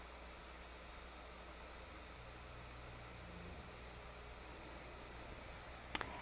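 Faint scratchy rubbing of a paper tortillon blending graphite on a paper tile, in runs of quick light strokes at the start and again near the end, with one sharp click just before it ends.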